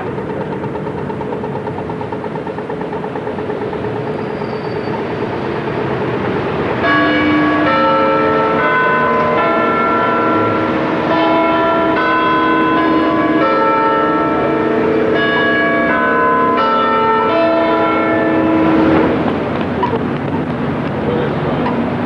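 Bells chiming a tune over city street traffic. The bells come in about seven seconds in, ring a run of notes about two a second, and stop near nineteen seconds; before that only the traffic noise is heard.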